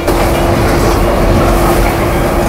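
Train passing on the elevated railway beside the alley, a loud steady rumble and clatter that comes in abruptly.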